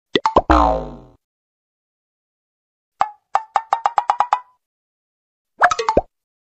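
A comedy "funny drum" sound effect: a few quick hits, then a deep drum hit that slides down in pitch over about half a second. About three seconds in comes a quick run of about ten clicks on one pitch, and a short cluster of hits follows near the end.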